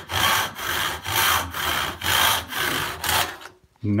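Rip-tooth handsaw cutting along the length of a board in steady back-and-forth strokes, about two a second. The sawing stops a little past three seconds in.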